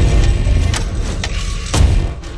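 Trailer sound design: a deep boom at the start with a low rumble underneath, then three sharp percussive hits.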